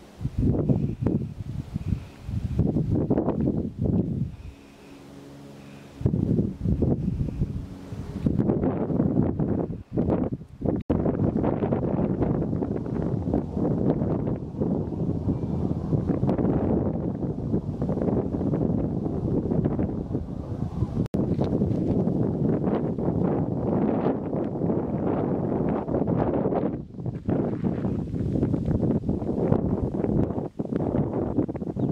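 Wind gusting across the camera microphone, a rumbling, uneven rush that drops briefly to a lull about four seconds in and then runs on strongly.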